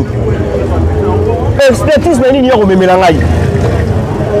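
A man talking, over a steady low engine rumble from a vehicle in the background.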